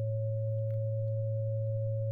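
Two steady pure sine tones played together from a signal-generator recording: a low A at 110 Hz and a weaker, higher C sharp near 550 Hz, a major third two octaves up. The notes are sounded as a test of how a just-tuned versus piano-tuned major third blends with its fundamental.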